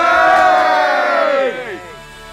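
A small group of people cheering together in one long shout, many voices at once, which falls away together about one and a half seconds in.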